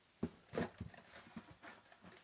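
Faint handling sounds of carded Hot Wheels cars being pulled from a cardboard case: a few light clicks and taps of plastic blisters and card stock, the sharpest about a quarter second in.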